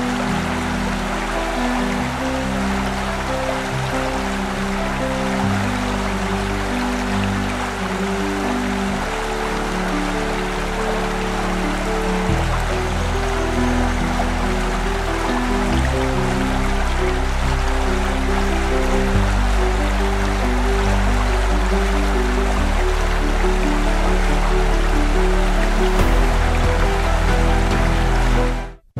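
Slow ambient music of long, held low chords that change every few seconds, over a steady hiss of flowing river water.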